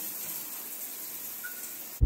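Overhead rain shower head running: a steady, even hiss of falling water.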